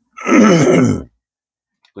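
A man clears his throat once, a rough voiced sound falling in pitch and lasting about a second.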